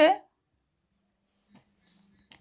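Felt-tip marker writing on a whiteboard: a few faint, short strokes in the last half second or so.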